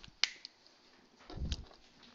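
Two sharp clicks about a second and a quarter apart, the second with a dull low thump under it.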